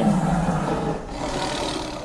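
Tiger roar sound effect: a rough, noisy growl that fades away over about two seconds.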